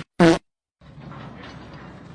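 A short, loud pitched sound from a social-media clip playing back, lasting about a fifth of a second, cut off into a half-second of dead silence as the clip loops, then faint background hiss.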